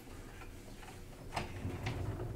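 Quiet room tone with a steady low hum and a few sharp, irregularly spaced clicks or taps. The loudest two come about a second and a half in and just before the end.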